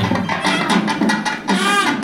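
Festival drumming on two-headed barrel drums: quick, steady strokes at about six or seven a second. A held pitched note joins near the end.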